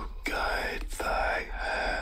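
A whispered, moaning voice from the horror film's soundtrack, in three drawn-out phrases.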